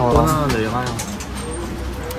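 A voice speaking briefly, its pitch wavering, over a steady low hum of room noise.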